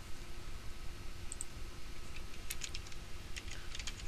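Computer keyboard typing in short runs of keystrokes, with a steady low hum underneath.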